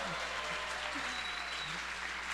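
Audience applauding, with a few voices mixed in.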